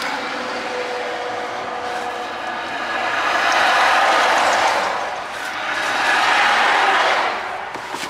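Road traffic passing close by: tyre and engine noise that swells and fades twice, peaking about four seconds in and again about six to seven seconds in.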